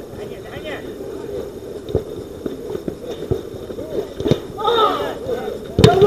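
Players shouting during a five-a-side football game, with sharp thuds of the ball being kicked: a few lighter kicks, then a hard kick near the end followed at once by loud shouts.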